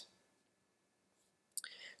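Near silence, then a faint breath intake from the narrator near the end, just before he speaks again.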